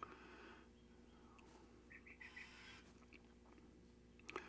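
Near silence: a faint steady hum, with a few soft little ticks about two seconds in from magnet wire and a toroid being handled during winding.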